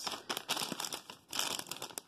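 Bag of organic blue corn tortilla chips crinkling as it is handled and turned over, in two spells of irregular crackles.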